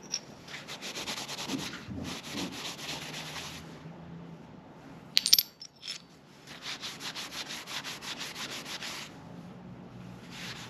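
A paper shop towel wet with acetone rubbed in quick back-and-forth strokes over small bronze pendants, in two bouts. About five seconds in, a brief metallic clink as the bronze pieces knock together.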